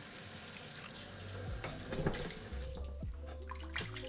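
Kitchen tap water pouring in a steady stream into a metal pot of raw pork chunks, filling it; the flow stops about three seconds in.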